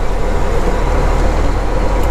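Semi truck's diesel engine running as the truck drives slowly, heard from inside the cab as a steady low rumble with road noise.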